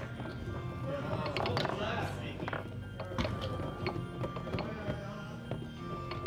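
Foosball in play: irregular sharp clacks of the ball being struck by the rod-mounted men and hitting the table walls, with the knock of rods. Background music and faint chatter run underneath.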